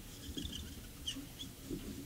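Low murmur of a seated audience in a large hall, with a few short, faint, high-pitched squeaks about half a second and a second in.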